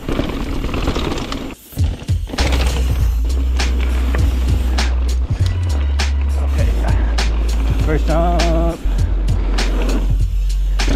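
Mountain bike rolling fast down a dirt and rock jump trail: tyre rumble and rattling knocks from the bike over rough ground, under steady wind buffeting on the bike-mounted action camera's microphone. A short wavering pitched sound comes near the end.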